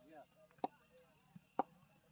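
Two short, sharp knocks about a second apart, with faint distant voices.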